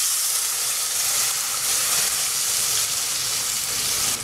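Wet ground tomato masala paste sizzling in hot oil in a kadai: a steady, loud hiss that starts suddenly as the paste goes in.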